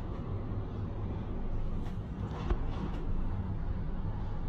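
A military truck driving past on the road, its engine a steady low rumble.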